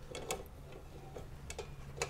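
A stainless steel gas outlet box and its hinged lid being handled on a wall mount, giving a few faint, scattered clicks against quiet room tone.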